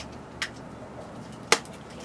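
Handling of a tri-fold vanity mirror with plastic panels and protective film: a light tick about half a second in, then a sharp click about a second and a half in.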